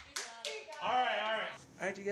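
A few sharp hand claps at the close of a sung song, then a person's voice for about half a second, starting about a second in.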